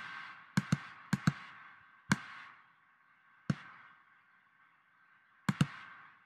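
Sharp clicks from a computer mouse and keyboard at a desk: about eight separate clicks, several in quick pairs, each followed by a brief fading tail over faint room noise.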